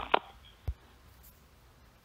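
Two short knocks: a sharp one right at the start and a duller, lower thump just before a second in, followed by faint room tone.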